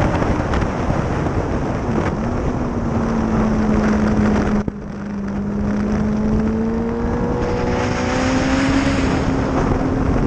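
Onboard sound of a Suzuki GSX-R sportbike's inline-four engine running at track speed under heavy wind rush on the microphone. The engine note holds steady, drops out for an instant about halfway through, then climbs slowly as the bike accelerates.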